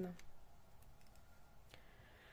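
A few faint, sparse clicks of a plastic locking stitch marker being clipped back into crochet stitches.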